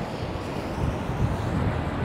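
Steady city street noise: traffic on a wet road, with wind buffeting the microphone.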